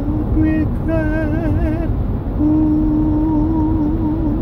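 A man singing a wordless melody with vibrato over the steady low rumble of a moving car: first a run of short wavering notes, then one long held note from about halfway through.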